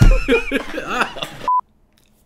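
Men laughing hard. About one and a half seconds in there is a short single-pitch beep, a censor bleep, and then the sound cuts off abruptly.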